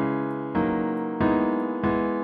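A four-chord progression played back in a piano sound by the ChordChord online chord generator: C-sharp minor, D-sharp minor, E major seven, then E major. A new chord is struck about every two-thirds of a second, and each one is left to fade.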